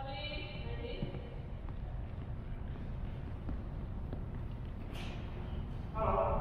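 Low steady hum of a large gym hall with faint voices at the start, and a single sharp crack near the end: a badminton racket striking a shuttlecock.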